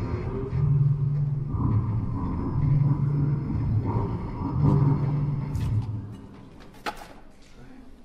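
Theatre sound effect of rhinoceroses bellowing over the radio: a series of low, rumbling calls, each about a second long, that stops about six seconds in. A sharp knock follows a second later.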